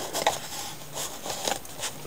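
A white cardboard box handled and slid open by hand: a few light, separate scrapes and taps of cardboard.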